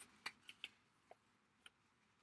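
Near silence with a few faint, short ticks as card stock and a paper sticky-note mask are handled.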